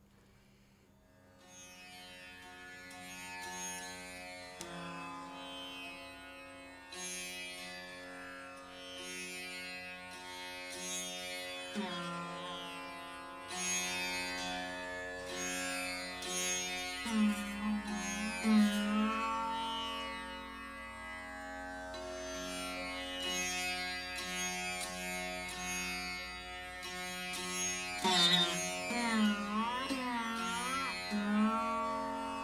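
Rudra veena played slowly: long plucked notes with deep slides in pitch over a steady drone, coming in about a second and a half in.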